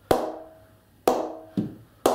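English willow cricket bat (BAS Bow 20/20 Grade 1) struck on its face in a performance test: two sharp knocks about a second apart and a softer third, each with a short ringing ping that dies away. The bat is pinging well, a sign of good response off the blade.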